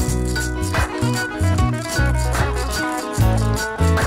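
Instrumental loop-pedal music: an electric guitar played over low held bass notes, with a quick, even rattling rhythm running on top.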